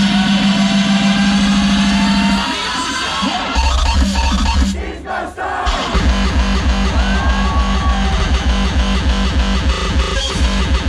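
Loud hardstyle DJ set blasting from a festival PA: the heavy distorted low pattern drops out about two and a half seconds in, dips to a brief lull near five seconds, then pounding kick drums come back in about six seconds in and keep an even driving beat.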